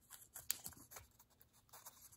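Faint, scattered small clicks and scratches of a thin plastic ring-installation guide being worked by hand around an aluminium piston.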